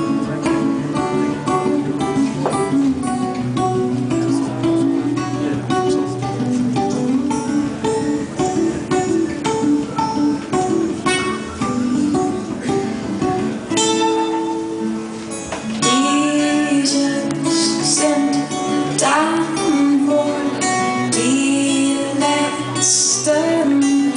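Two acoustic guitars playing together, picked and strummed, in a folk song's instrumental passage.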